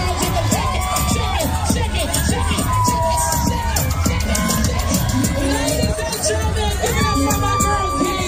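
DJ dance music with a steady beat played over loudspeakers, with a crowd cheering and shouting over it.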